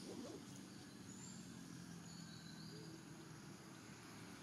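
Quiet ambience: a few faint, short, high bird chirps over a low steady hum.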